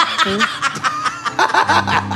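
Two people laughing hard together in quick, short bursts.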